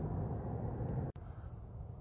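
Steady low outdoor background rumble with no distinct event; it drops abruptly a little after a second in.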